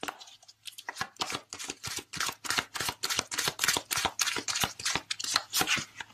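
A deck of oracle cards being shuffled by hand: a quick run of card flicks and slaps, several a second, starting about a second in.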